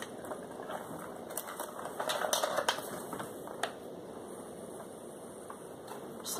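Light, irregular clicking and rustling from hands handling makeup packaging, with one sharper click about three and a half seconds in.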